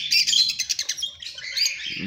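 Cockatiels calling in an aviary: a quick run of short, high chirps and squawks, thickest in the first second and thinning out after.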